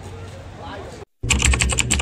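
Typing sound effect on an end card: a quick run of about a dozen sharp key clicks over a low hum, starting abruptly after a brief drop to silence. Faint outdoor background fills the first second.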